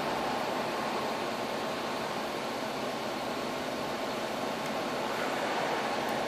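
Steady, even background hiss of room noise with no other events, like a fan or air conditioning running.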